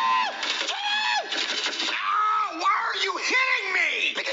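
A high-pitched voice yelling in several drawn-out cries, each about half a second long, with a lower voice wavering beneath it.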